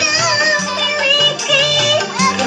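A high voice singing a melody full of wavering, ornamented pitch turns, over steady backing music.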